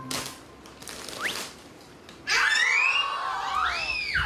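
Soft rustling and a few light clicks as wet wipes are pulled from a packet, then, a little past halfway, a much louder burst of overlapping high, gliding, whistle-like tones.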